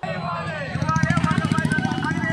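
A vehicle engine running with a low, rapidly pulsing throb, under people's voices talking.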